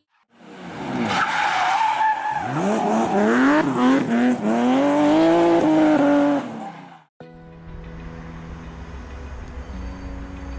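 A performance car's engine revving up and down with tyres squealing, as in drifting, the pitch sweeping repeatedly; it cuts off suddenly about seven seconds in. A quieter, steady low rumble follows.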